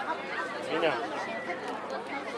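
Several people talking at once in overlapping chatter, no music.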